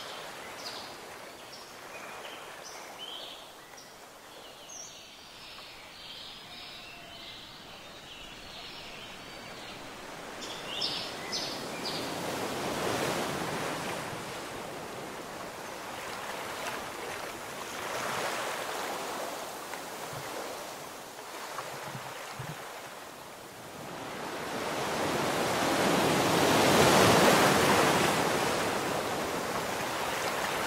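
Ocean surf washing onto a beach in a steady wash of noise, swelling with each wave, the biggest surge near the end.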